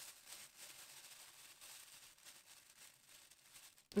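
Very faint rustling of a plastic roasting bag being gathered and twisted closed, barely above the room's background.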